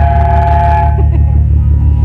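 Loud amplified electric guitar and bass of a live noise-punk band: a heavy, pulsing low drone with a high ringing tone on top that stops about a second in.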